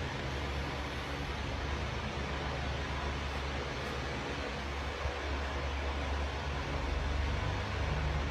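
Steady background noise, an even hiss over a low hum, with no distinct sounds standing out.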